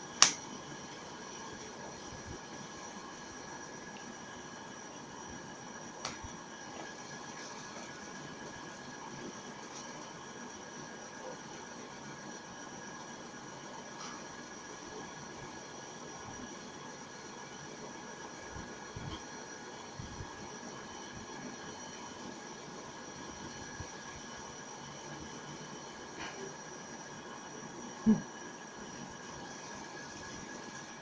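Steady hiss of room tone with a faint, high, steady whine. A sharp click comes just after the start and another near the end, with a few fainter ticks between.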